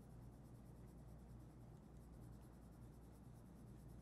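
Faint sound of a colored pencil shading on paper, over a low steady hum.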